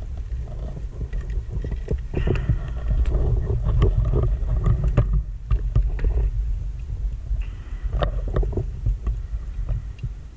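Muffled underwater sound from a diver's camera housing: a steady low rumble of water movement, with two long spells of bubbling and crackle, about 2 seconds in and again near 7.5 seconds, typical of a scuba diver's exhaled breath escaping from the regulator.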